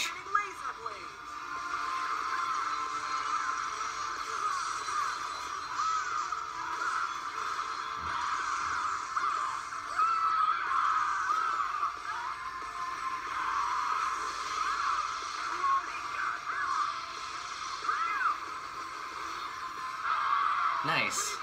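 Soundtrack of an animated fight video playing back from a small speaker: continuous music with voices, thin and tinny.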